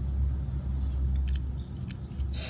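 Low, steady rumble of wind on the microphone, with a few faint clicks and rattles of plastic Beyblade parts being handled.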